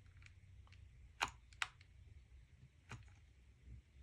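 A few faint, sharp clicks and ticks, spread out and irregular, from a hot glue gun being worked along the edge of a wooden embroidery hoop as glue is laid on.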